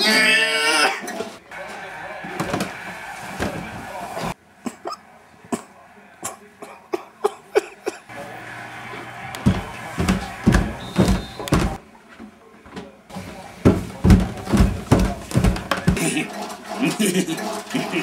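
A brief voice, then scattered knocks, then two runs of evenly spaced thumps, about two and a half a second: footsteps coming down an indoor staircase.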